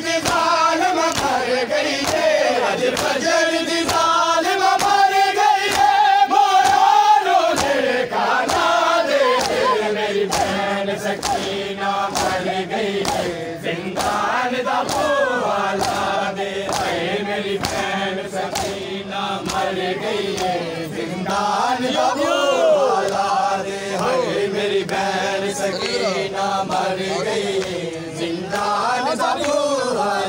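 A crowd of men chanting a noha together in a mourning lament, with sharp slaps of matam (hands beating on chests) repeating in time with the chant.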